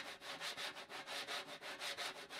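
Fingers sweeping in circles across a coated snare drum head, playing a quiet, even, rhythmic swish of about six strokes a second, the way a wire brush is played.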